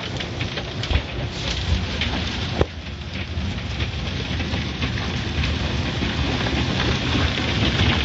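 Automatic car wash heard from inside the car: water spray and wash brushes beating on the body and windows in a steady, dense rushing, with a couple of sharp knocks in the first three seconds.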